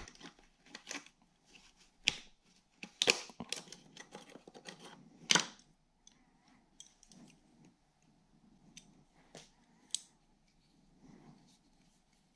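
Scissor-type fuel line disconnect tool working a quick-connect fuel line fitting on a fuel rail: faint metal clicks and clacks as the line is released and pulled off, busiest in the first half. A few sparse ticks follow as the tool is handled.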